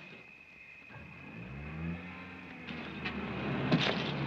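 Automobile engines approaching, the sound rising in pitch and growing louder from about a second in, with a brief sharp noise near the end as the cars draw up.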